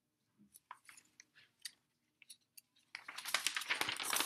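A page of a large picture book being turned: a few faint clicks and taps as the book is handled, then a longer crackling paper rustle starting about three seconds in as the big page is turned.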